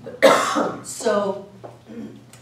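A woman coughs once into her hand, a single short, sharp cough.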